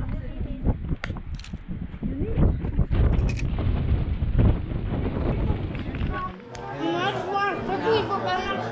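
Wind buffeting the microphone, a rough low rumble with faint voices and a few clicks under it. About six seconds in the rumble cuts off and a child's high voice starts talking.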